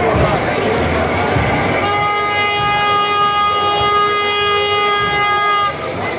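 A horn blown in one long steady note, starting about two seconds in and lasting about four seconds, over crowd chatter.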